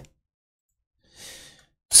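A man's short, soft exhale, a sigh, about a second in, with the start of his speech just at the end.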